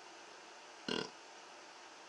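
A man's brief 'mm' about a second in, over faint room hiss.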